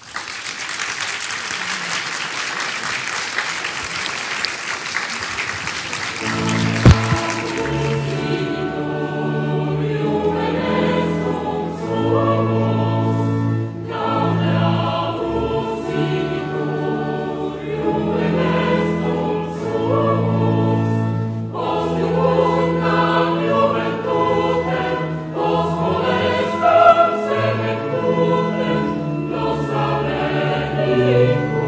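An audience applauding for about the first eight seconds, giving way to choral music: a choir singing held, sustained chords. A single sharp click sounds about seven seconds in, at the changeover.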